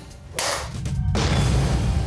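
Golf club smashing a portable hard drive on a wooden block: a sudden rush of noise about half a second in, then a deep boom that carries on to the end.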